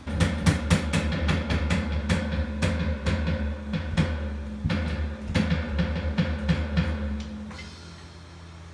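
Roland electronic drum kit played with wooden sticks: a drum pattern of bass drum, snare and cymbal hits, several a second with a couple of short breaks, that stops near the end.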